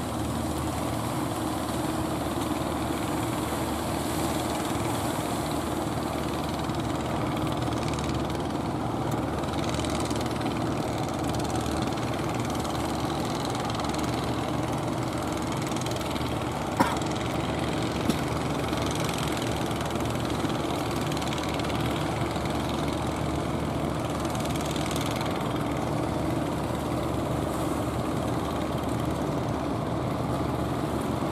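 Engines of wooden fishing boats running steadily as the boats motor in through the surf, a continuous engine drone. A sharp click stands out once about seventeen seconds in, with a smaller one a second later.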